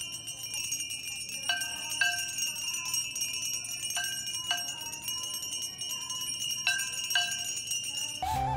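Ceremonial bells of a Hindu aarti ringing continuously, with pairs of lower tones half a second apart recurring every two to three seconds.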